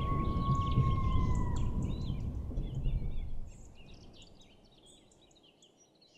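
Closing sound design under a channel logo: a low rumble fading away over about three and a half seconds, a long whistling tone that dips in pitch about one and a half seconds in, and many short bird chirps that go on faintly to the end.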